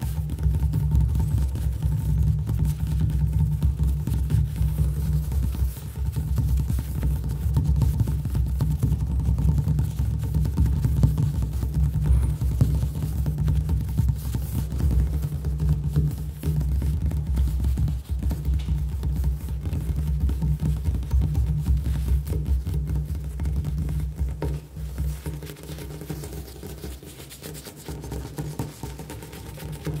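Fingertips and nails tapping and drumming rapidly on a hard stone kitchen countertop, a dense run of many small taps a second. A low, steady music bed plays under it. The tapping eases a little near the end.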